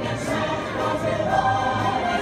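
Recorded parade music with a choir singing, played over the parade's loudspeakers.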